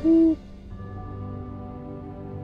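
A single short owl hoot, one steady note of about a third of a second, at the start of a logo sting. Soft sustained music tones follow it.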